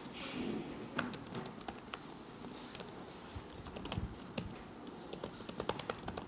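Typing on a computer keyboard: irregular key clicks, bunching into a quicker run near the end.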